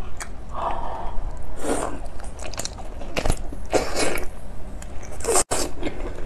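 A person biting into and chewing a large mala-spiced squid: a run of irregular bites and chews.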